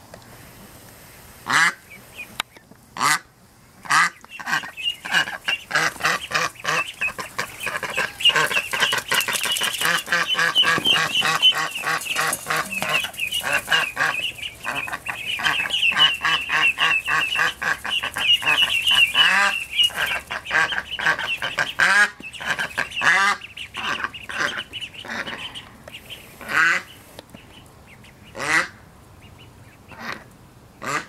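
Ducks calling: half-grown ducklings with an adult duck. Their short, high peeping calls come in a dense, rapid run from about four seconds in until about twenty seconds, with a few louder single calls before and after.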